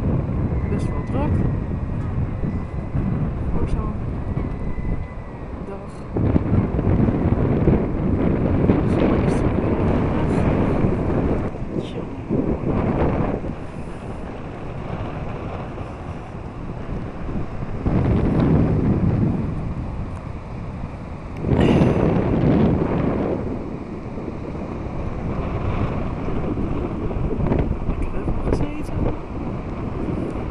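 Strong wind buffeting the microphone in repeated gusts, with the loudest surges about six, eighteen and twenty-two seconds in.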